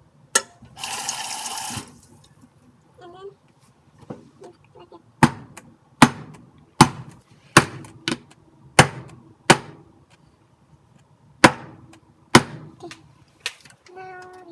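Round metal cake pan full of batter knocked down against the counter again and again, about eight sharp knocks with a short ring, roughly one a second. A brief hiss comes about a second in.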